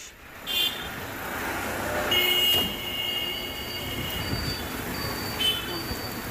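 Street traffic noise with vehicle horns: a short toot under a second in, a longer one about two seconds in that lasts about half a second, and another short toot near the end.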